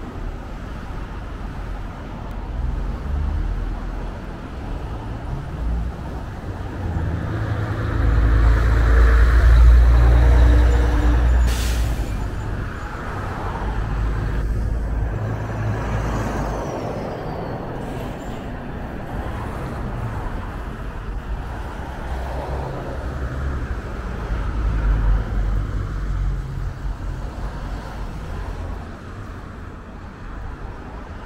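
Road traffic on a city street: cars and heavier vehicles drive past in a steady low rumble, loudest about eight to eleven seconds in as a big vehicle goes by, with a brief sharp sound just after it. Further vehicles pass at intervals near the middle and toward the end.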